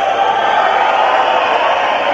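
Concert crowd cheering and shouting, a steady mass of many voices.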